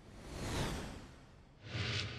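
Two whoosh sound effects of a closing title animation. The first swells to a peak about half a second in and fades away. The second, brighter one rises near the end.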